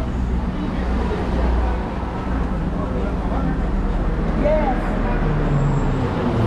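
Steady low rumble of road traffic, with an engine idling nearby that shifts pitch near the end, and faint voices in the background.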